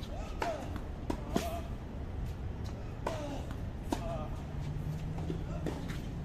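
A tennis ball bouncing a few times on a hard court, each bounce a short sharp knock, at irregular gaps. Brief bits of voices come and go in between.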